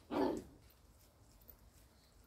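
Maremma sheepdog puppy giving one short bark just after the start, lasting under half a second.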